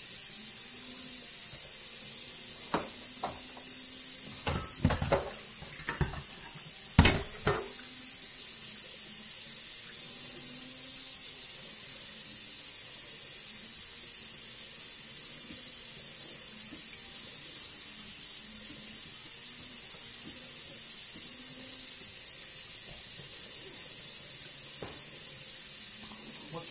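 A handful of clinks and knocks from a knife and dishes being handled on a kitchen counter, bunched between about three and eight seconds in, the sharpest near the end of that stretch, over a steady hiss.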